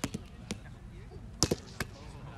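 Roundnet (Spikeball) rally: five or so sharp slaps of hands hitting the small rubber ball and the ball striking the net, loudest about one and a half seconds in.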